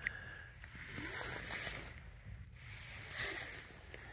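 Icy pond water and slush sloshing as a small glass jar is dipped into a hole in the ice and scooped full, a soft watery rustle in two bouts, about a second in and again near three seconds.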